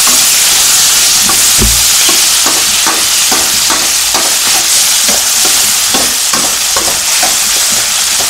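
Eggplant, onion and tomato sizzling in oil in a stainless-steel kadai, with a steady frying hiss. A steel spoon stirring the vegetables scrapes and clinks against the pan about two to three times a second.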